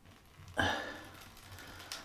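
Bath hot tap turned on with the supply drained: about half a second in, a short gush of water and air sputters from the tap and fades away. Only the residual water left in the pipe is running out.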